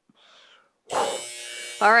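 An electronic interval-timer buzzer goes off suddenly about a second in: a steady, buzzy tone that marks the end of a 20-second Tabata work interval.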